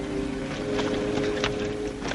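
Music holding steady notes, with the irregular clopping of horses' hooves on a dirt trail from about half a second in.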